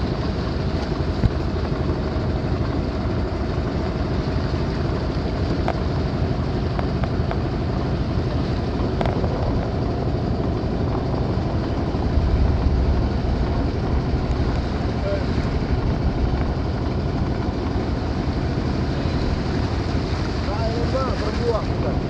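A small wooden boat's engine running steadily while under way, with water washing past the hull; the low rumble swells slightly about halfway through.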